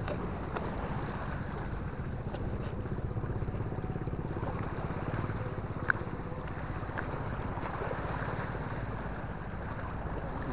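An engine running steadily, a low even drone, most likely a boat's motor, with one sharp click about six seconds in.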